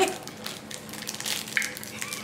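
Plastic snack wrapper crinkling and crackling as it is pulled open by hand, with a brief rising sound at the very start.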